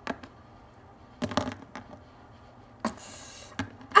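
Light clicks and taps of small plastic Littlest Pet Shop figures being handled and knocked on a tabletop, with a short hiss and then a sharper knock near the end as one figure is struck against another.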